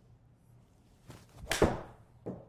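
Forged Srixon ZX7 7-iron striking a golf ball in an indoor simulator bay: one sharp impact with a short ring about one and a half seconds in, after a fainter sound half a second earlier. The shot is a slight mis-hit ("a miss").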